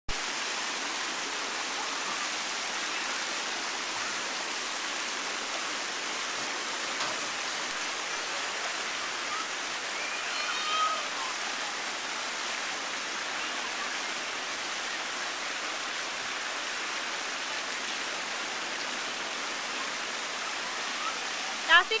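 Steady rush of running water in a shallow outdoor pool, an even hiss that holds level throughout. Faint children's voices come through about halfway.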